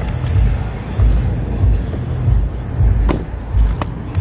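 Handling noise from a handheld camera being moved around: uneven low thumps and rumble, with two sharp clicks about three seconds in.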